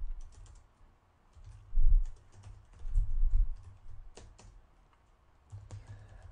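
Computer keyboard typing: keystrokes come in several short runs with brief pauses between them.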